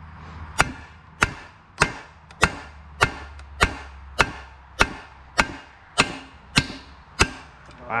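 Hammer blows on steel in a steady rhythm, twelve strikes a little under two a second, each with a short metallic ring: driving a stubborn cut-off bolt out of an exhaust header flange.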